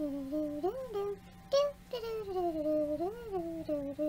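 Emergency sirens wailing outside, their pitch sliding up and down in slow sweeps, loud enough to interrupt the recording.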